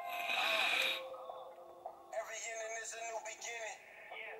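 A long draw on a Geek Vape Aegis X box mod with a Smok TFV16 sub-ohm tank: a strong airy hiss of air pulled through the tank for about the first second. It then drops to a quieter stretch over faint background music.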